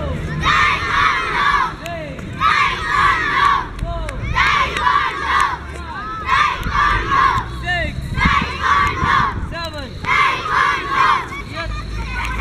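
A large group of schoolchildren shouting together in unison during a taekwondo drill, six loud shouts about two seconds apart, one with each strike. A single voice calls between the shouts.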